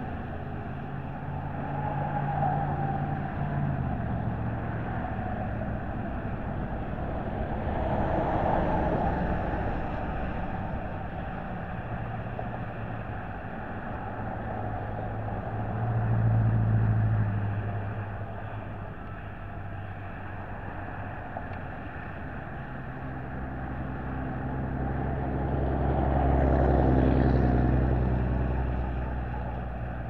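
Motor vehicle noise: a steady low engine hum over a haze of road noise, swelling and fading three times as vehicles pass, the loudest about three-quarters of the way through.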